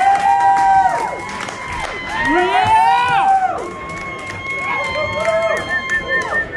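Audience whooping and cheering after the song has ended, with long drawn-out calls that slide down in pitch, the biggest cluster about halfway through, over a steady high ringing tone.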